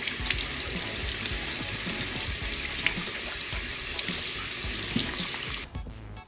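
Water running from a bathroom faucet into the sink as hands are rinsed under the stream: a steady rush that cuts off near the end.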